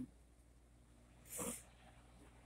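Near quiet between spoken phrases, broken by one short, noisy breath about one and a half seconds in, over a faint steady low hum.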